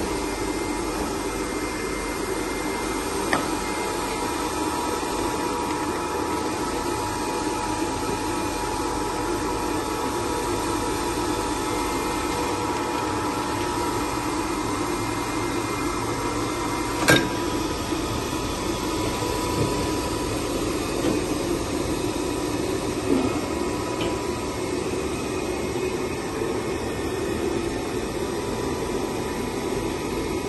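Steady machine hum from a Polar 115 ED paper guillotine and its Knorr automatic down-loader running, with a faint steady tone over it. A few short clicks sound, the sharpest about 17 seconds in.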